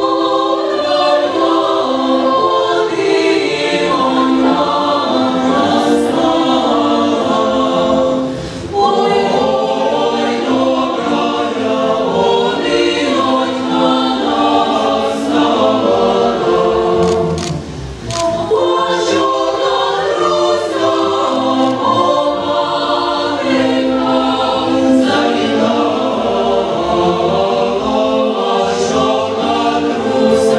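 Mixed choir of men and women singing a chorus from an opera, with short breaks between phrases about nine and eighteen seconds in.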